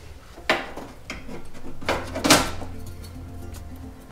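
Background music with a few light metallic clinks and clatters as a washing machine shock absorber and its steel mounting plate are handled and fitted into the upper mount; the two sharpest clinks come about half a second in and just past the middle.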